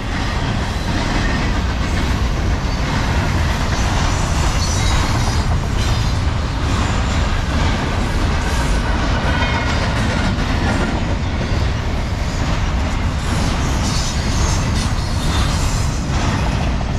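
Freight train of double-stack container well cars rolling past at about 50 mph: a loud, steady rumble of steel wheels on rail with clickety-clack.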